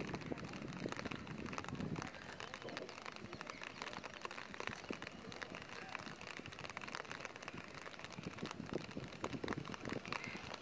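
Light rain falling: a steady hiss with many small drop ticks.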